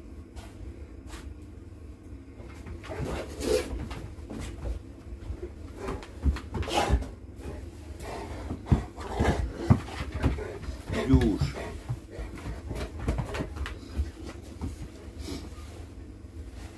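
A dog vocalizing indoors with several drawn-out, voice-like groans and whines that bend in pitch, between short clicks and knocks of movement.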